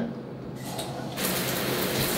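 A shower being turned on: water starts spraying a little over a second in, a sudden steady hiss.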